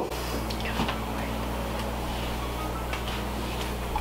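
Steady low room hum, with a few faint clicks from a small glass vial and glass bottle being handled as the vial is opened and brought to the bottle's mouth.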